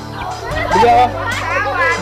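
Children's voices over background music, the voices growing louder about half a second in.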